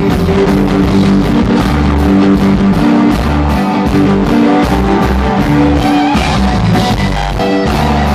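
Live string band playing an instrumental jam: fiddle, mandolin and banjo over bass and drums, with a steady beat.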